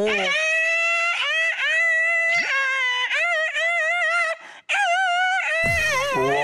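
A man's voice imitating a haegeum, the Korean two-string fiddle (gueum, vocal imitation of an instrument): high, long sliding notes with a wavering pitch, broken by a short pause about four and a half seconds in. A lower voice comes in near the end.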